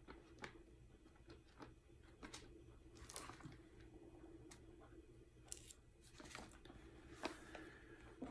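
Near silence in a small room with a faint steady hum, broken by scattered soft clicks and rustles of paper pages being handled.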